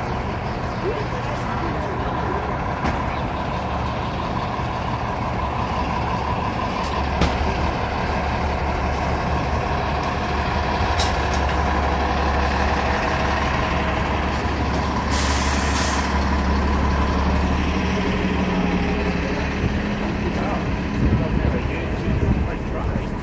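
A city transit bus running close by in street traffic: a steady low engine hum with a faint whine, and a short air-brake hiss about fifteen seconds in. Voices of passersby sound underneath.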